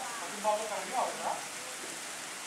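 Brief, faint snatches of people talking, over a steady hiss of background noise.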